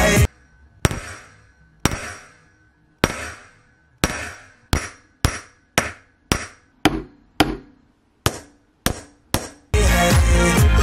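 Ball-peen hammer striking a copper sheet on a bench block, about thirteen blows, each ringing briefly and dying away. The first few come about a second apart, the rest faster, about two a second. The blows dent the copper to give it a hammered texture. Background music cuts out just after the start and comes back just before the end.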